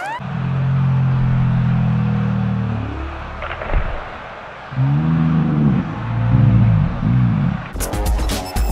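Slowed-down human voice in a slow-motion replay, dropped to a deep, drawn-out pitch: one long low yell that sags away about three seconds in, a brief knock, then several more slow, low cries.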